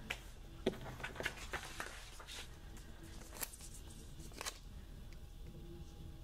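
A loose paper planner page being handled and turned on a cutting mat: a string of light clicks and taps with soft paper rustle, thinning out after about four and a half seconds.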